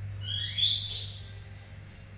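A single short, high-pitched animal call that rises in pitch and breaks into a harsh screech, loudest about half a second in and fading within a second, over a steady low hum.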